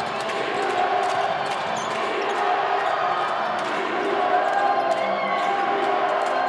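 Basketballs bouncing on the court, several short, irregular thuds overlapping, over a background of people talking in the arena.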